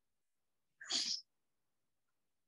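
A single short, sharp burst of breath from a person, about a second in and under half a second long.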